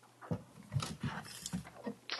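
A large paper poster board being handled and lowered near a podium microphone, giving a few soft bumps and rustles.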